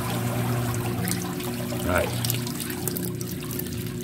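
Water running and trickling steadily into a fish tank, over a low steady hum.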